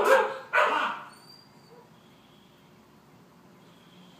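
Australian Shepherd barking: a bark at the very start and one more about half a second later, then it stops about a second in.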